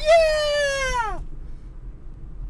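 A man's high-pitched, excited squeal of joy lasting about a second, shooting up at the start and then sliding down in pitch as it fades.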